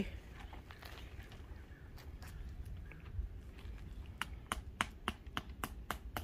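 Light, sharp knocks from a hammer tapping a tent stake into the ground: a few scattered taps, then a steady run of about three a second from about four seconds in.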